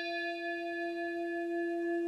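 Intro chime: a single struck bell tone, rung once just before and ringing on steadily with one strong low note and bright higher overtones.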